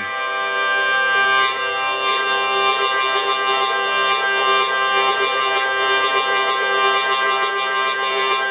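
'Aquitaine' hurdy-gurdy with its wheel cranked, drone and trumpet strings sounding a steady chord. The trumpet string's loose buzzing bridge rattles each time the cranking hand jerks: a single buzz about a second and a half in, then quick rhythmic buzzes.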